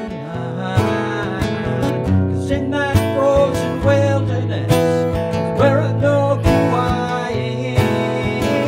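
Steel-string acoustic guitar strummed in a folk song, with a man's singing voice carried over the chords.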